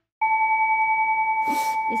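Brass singing bowl struck once, then ringing on in a steady, gently wavering tone. A short rustle comes near the end.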